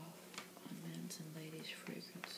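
A woman's soft-spoken reading voice, with a few faint clicks between words.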